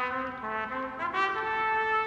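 A trumpet plays a quick run of short notes, then moves up to a long held note a little past halfway.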